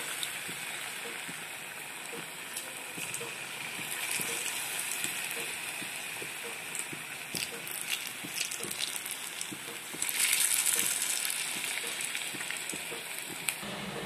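Onion-and-besan pakoras deep-frying in hot oil in a kadhai: a steady sizzle with scattered small pops and crackles, growing louder for about a second around ten seconds in.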